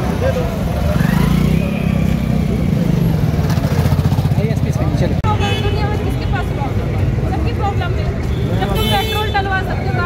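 Street traffic with a motorcycle engine running close by through the first half, under people talking. From about halfway in, talking voices take over.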